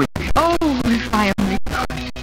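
Music from an old radio-broadcast transcription, with pitched notes that glide and are held, broken up several times a second by brief dropouts in the audio.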